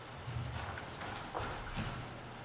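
Slow footsteps of hard-soled shoes on a floor: three clip-clop-like steps.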